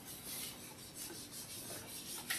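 A whiteboard eraser rubbing across a whiteboard in a series of quick back-and-forth strokes, wiping off marker writing.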